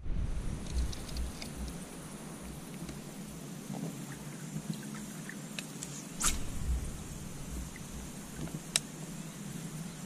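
Quiet open-air ambience with a low, uneven rumble and a few small clicks, the sharpest about six and nine seconds in.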